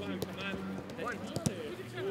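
Players' shouts and calls overlapping on a football training pitch, with a few soft thuds of a football struck by boots during a passing drill.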